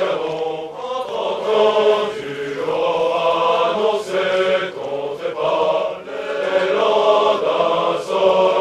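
A large chorus of male officer cadets singing their French military promotion song together, the sung phrases separated by short breaks.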